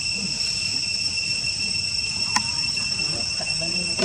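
Steady high-pitched insect chorus from the surrounding forest, a shrill drone holding several even pitches, with a single sharp click a little past halfway.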